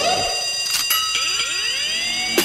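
Synthesizer effect in a K-pop dance track: several high steady tones held together, with swooping pitch glides beneath them and a further layer of rising sweeps joining about halfway through.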